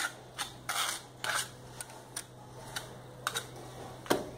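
Steel mason's trowel scraping and spreading cement mortar onto a brick: a series of short, irregular scrapes, about seven in four seconds.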